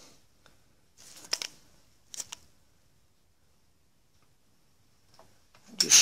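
The sharp point of an old tap, held in a chuck on a milling machine, scribing a line across a metal cam ring: two short scrapes, about a second in and just after two seconds.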